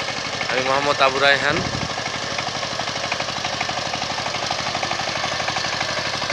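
Two-wheel power tiller's single-cylinder diesel engine running steadily with a rapid, even chugging while it tills wet paddy mud.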